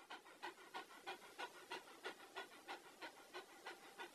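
A puppy panting quickly and faintly, about three breaths a second.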